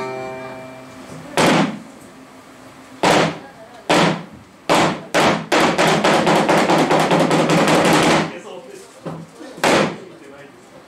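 Minmin, a string instrument laid flat and played like a table, struck hard several times with short decaying hits. This is followed by a fast flurry of strokes lasting about three seconds and one last hit near the end.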